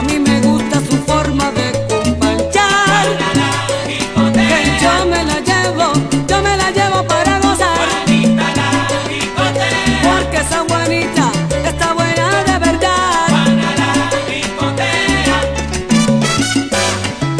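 Salsa orchestra recording in an instrumental passage without vocals: a bass line moves in short repeated notes under the band while the percussion clicks steadily.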